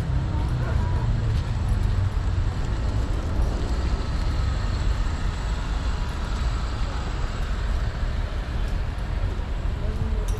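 Steady low rumble of outdoor ambience, with faint voices in the background.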